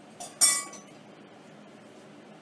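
Kitchenware clinking: a light tap, then a sharp clink about half a second in with a brief ringing tone that fades quickly.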